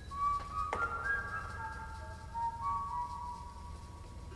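A slow whistled melody of single clear notes, each held for a second or so as the tune steps between pitches, with a brief click about three-quarters of a second in.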